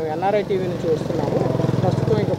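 A motorcycle engine running close by under a man's speech, a steady low throb that grows louder about a second in.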